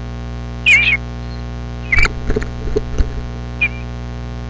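Eastern bluebird chirps, three short warbling calls spread over the few seconds, over a loud steady electrical mains hum; a few sharp knocks come in the middle between the second and third chirps.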